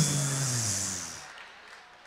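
The drawn-out end of a man's word into a microphone, his voice sliding down in pitch with a hiss and trailing off a little over a second in, then faint room tone.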